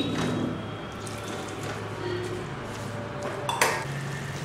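Chopped drumstick leaves being mixed by hand in a stainless steel pot: a quiet rustle and scrape, with a single sharp clink of metal a little before the end, over a low steady hum.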